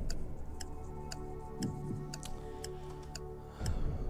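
Steady clock-ticking sound effect over a sustained tension music bed: a quiz countdown timer running while contestants think.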